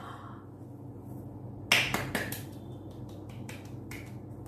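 A person clapping: an irregular run of short, sharp hand claps starting a little under two seconds in, the first the loudest.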